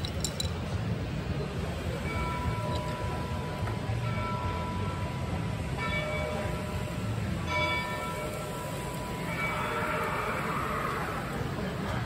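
Several sustained ringing, chime-like notes, each about a second long, sounding at intervals over the steady low hum of a busy exhibition hall.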